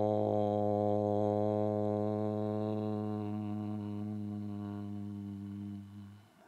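A man's voice chanting a long 'Om' on one steady low pitch, held without a break. The sound grows duller over the second half as it closes into the hum, and it stops near the end.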